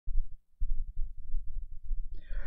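A low, uneven rumble with no speech, dropping out briefly about half a second in.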